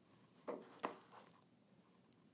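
Chef's knife slicing through a cucumber and knocking lightly on a wooden cutting board: two sharp taps less than half a second apart, then a fainter third.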